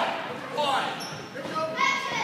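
A basketball bouncing on a hardwood gym floor, amid the voices of players and spectators, with a short high squeak about halfway through.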